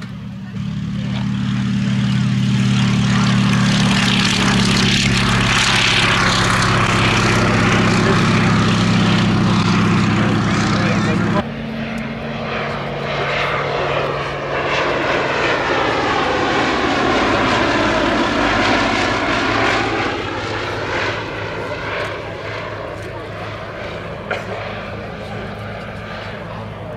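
Fairey Swordfish biplane's Bristol Pegasus nine-cylinder radial engine opening up to high power on the ground, loud and steady. After an abrupt cut, the biplane flies past with its engine and propeller note sweeping as it goes by, then fading near the end.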